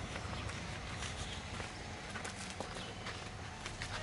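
Footsteps on a dry dirt path scattered with dead leaves and twigs, a run of irregular light steps.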